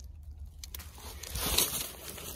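Dry leaves and twigs rustling and crunching as someone moves through leaf litter beside a stone wall, swelling about a second in and easing off near the end.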